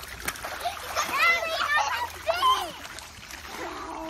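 Water splashing and sloshing in a small inflatable pool as children swim and play, with high children's calls and squeals from about one to two and a half seconds in.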